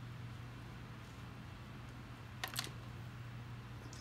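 Tiny hard plastic astronaut figures being picked up and handled, giving two or three quick light clicks about two and a half seconds in, over a steady low hum.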